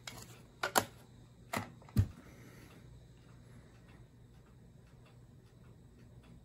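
A few sharp plastic clicks and taps in the first two seconds, then only a faint steady low hum: no music comes from the cassette boombox.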